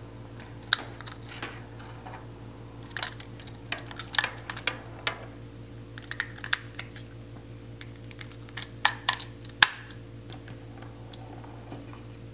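Batteries being pressed one at a time into a plastic battery holder against its spring contacts: a run of irregular clicks and clacks, with the sharpest snap near the end.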